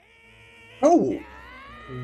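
Cartoon voice acting from the anime: an old man's exaggerated, high-pitched shout of surprise ("What?!"), held at first and then breaking into a louder cry that swoops up and down in pitch about a second in.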